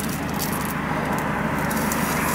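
Steady low hum of an idling car heard inside the cabin, with faint crinkling of a paper wrapper being worked off a drinking straw.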